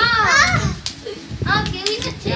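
Children's high-pitched voices calling out while playing, with a loud burst of voices at the start and again about a second and a half in.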